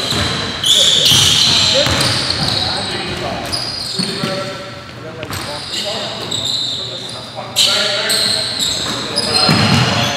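Basketball game sounds in a large, echoing gym: sneakers squeaking on the hardwood floor several times, a ball bouncing, and players' voices calling out indistinctly. There is a louder thump near the end.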